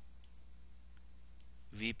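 A few faint, sharp clicks from the computer's pointing device as the highlighter is used, over a steady low electrical hum. A man's voice starts just before the end.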